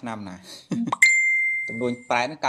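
A single bright bell-like ding struck about a second in, ringing on at one steady high pitch and slowly fading, over a man's talking voice.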